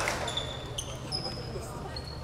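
A basketball bounces once on the hardwood gym floor right at the start, followed by several short, high squeaks of sneakers on the court, over a steady low hum of the hall.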